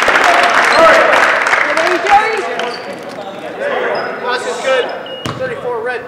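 Gym crowd and players during a basketball game: many voices cheering and shouting, loud for the first two seconds and then dropping to scattered calls. Short high sneaker squeaks on the hardwood floor and a single sharp bang of a basketball hitting the floor about five seconds in.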